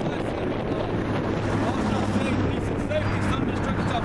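Wind buffeting the microphone, with a low steady hum through the middle.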